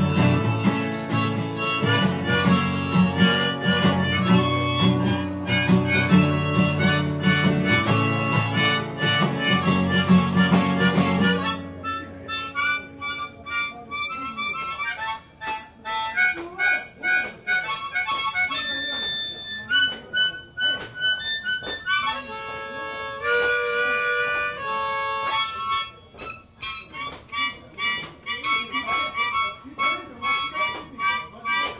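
Harmonica played over a strummed acoustic guitar. About eleven seconds in, the guitar stops and the harmonica carries on alone, held in cupped hands, in phrases of sustained notes with short breaks between them.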